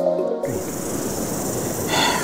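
Background music cuts off about half a second in and gives way to a steady rushing hiss of wind buffeting an action-camera microphone.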